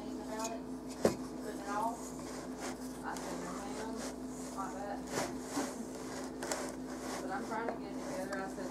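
Wooden spoon stirring thick, sticky pizza dough in a glass mixing bowl, with a sharp knock of the spoon against the bowl about a second in and a few lighter knocks later.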